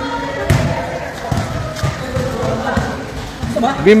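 A basketball bouncing on a court with irregular thuds, the clearest about half a second in, under people chatting. Near the end a voice calls out loudly.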